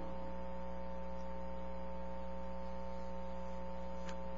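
Steady electrical mains hum with several overtones, at an unchanging level.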